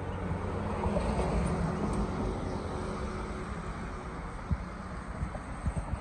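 A motor vehicle running close by: a low engine hum with road noise that swells about a second in and fades after the middle. A few short low thumps come near the end.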